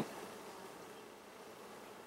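Faint, steady hum of honey bees from an open hive.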